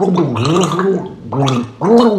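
A man's voice speaking German in a drawn-out, sing-song way, the pitch rising and falling, with a short break about a second in and another near the end.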